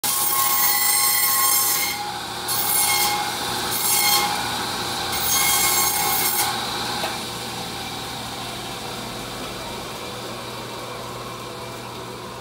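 Butcher's vertical meat band saw cutting through a beef rib section for tomahawk steaks. There is a loud cut with a whine at the start, then three more short cuts up to about six and a half seconds. After that the blade runs on with no load, a quieter steady sound.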